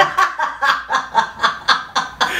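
A woman laughing, joined by a man, in quick repeated ha-ha pulses about four a second.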